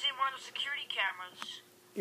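A high-pitched voice talking quickly for about a second and a half, with the words not made out, over a faint steady hum.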